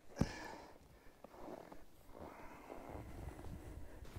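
An ice-filled car wheel set down on packed snow with a single dull thump, followed by faint, uneven rustling and crunching.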